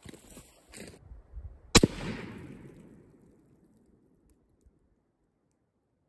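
A single rifle shot from a WBP Jack, an AK-pattern rifle in 7.62×39mm, heard from downrange at the target end. The shot rings out with a long echo that dies away over about two seconds.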